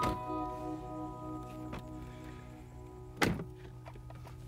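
A car door shuts with one loud thunk about three seconds in, over background music with held keyboard notes.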